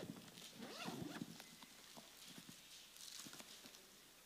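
Faint, scattered taps and handling noises from hands working at a lectern, with stretches of near quiet between them; they are a little louder in the first second and a half.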